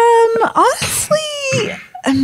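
A woman's wordless, drawn-out vocal sounds, the kind made while pondering a question: a held high "ooh" for about half a second, then quick rising and falling glides and a second long note that falls away.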